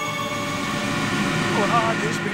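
A steady low rumble of city traffic noise, with a man's voice heard briefly near the end.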